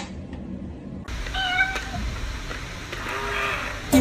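A cat meowing: one clear meow about a second and a half in, then a fainter, lower call near the end.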